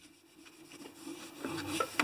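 A cloth rubbing back and forth on a sheet of aluminium, wiping the surface clean in short, faint strokes that start about half a second in and grow a little louder near the end.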